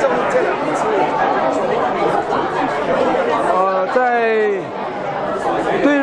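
Crowd chatter: many people talking at once in a large hall. One voice stands out briefly about four seconds in.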